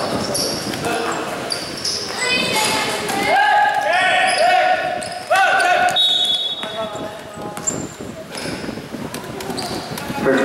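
Basketball being played: a ball bouncing on the court and knocks of play amid players' and onlookers' shouts, which are loudest a few seconds in.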